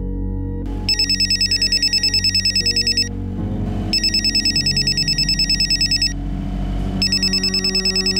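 A telephone ringing with an electronic trill: three rings of rapid high warbling pulses, about ten a second, the first two about two seconds long and the third cut short near the end as the call is answered.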